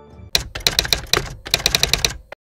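Typewriter sound effect: a quick, uneven run of key clacks in two bursts with a short break between them, cutting off abruptly.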